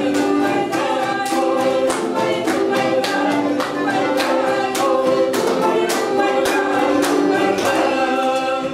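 Russian folk dance song sung by women's voices with accordion accompaniment, hands clapping steadily on the beat.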